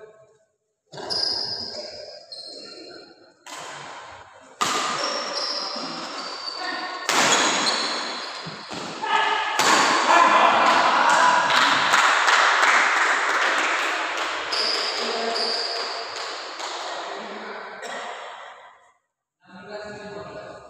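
Badminton doubles rally in a large hall: sharp racket hits on the shuttlecock and squeaking court shoes. Shouting and cheering swell through the middle and die away near the end as the point is won.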